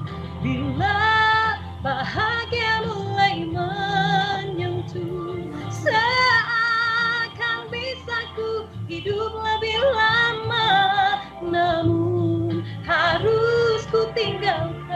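A woman singing a slow Malay ballad in held, sustained notes with a wavering vibrato, over a steady low backing accompaniment.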